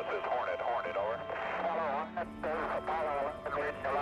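Voices over a radio link, in words too unclear to make out, with background music.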